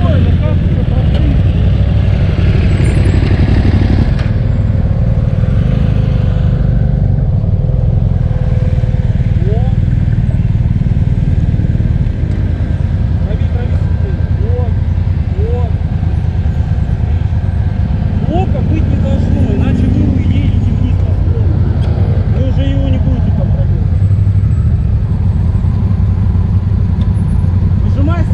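Motorcycle engines idling close by in a steady low rumble, with faint voices in the background.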